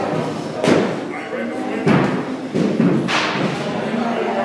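Baseball bat striking balls in a netted batting cage: three sharp knocks about a second apart, in a rapid hitting drill.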